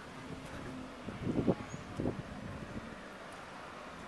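Urban street ambience: a steady low hum of distant traffic, with two brief louder low sounds about one and two seconds in.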